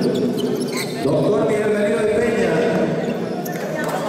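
Several voices of basketball players talking and calling out over one another on an indoor court, with a few short sharp sounds in between as the two teams high-five and shake hands after the game.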